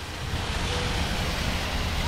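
Water spraying under pressure from a split in a garden hose: a steady hiss, with a low rumble underneath.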